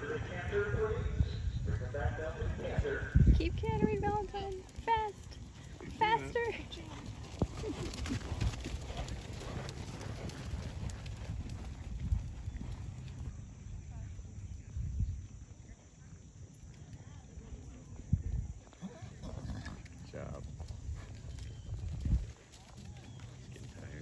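Hoofbeats of a horse cantering on a soft dirt arena: repeated dull thuds, strongest in the first half.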